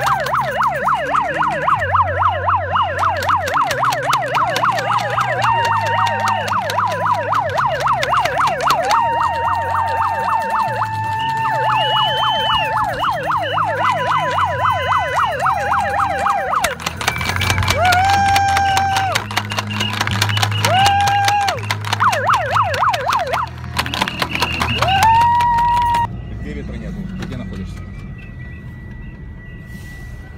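Several emergency-vehicle sirens sounding together in a fast up-and-down yelp. At times a siren slides up and holds a steady wail before yelping again. The sirens stop about four seconds before the end, leaving a low vehicle rumble.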